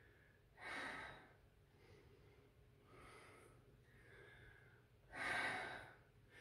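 A woman's breathing during side-lunge exercise: two short, louder breaths about a second in and near the end, with fainter breaths between.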